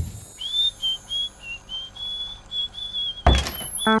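A man whistling a high tune in short notes that step between a few close pitches. A sudden loud burst cuts in about three seconds in.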